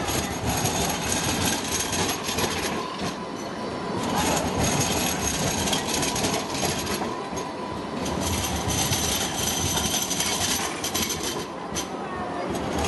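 Alstom Citadis X05 light rail tram running past close by, its wheels rolling on the rails, with a thin high whine that comes and goes.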